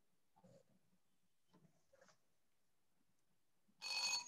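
Near silence, then near the end a quiz timer's bell-like alarm starts ringing with several steady tones at once, signalling that the answer time is up.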